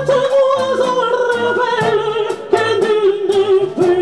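A singer's voice through a handheld microphone, holding long notes that slowly fall in pitch, over instrumental backing with bass and a steady beat.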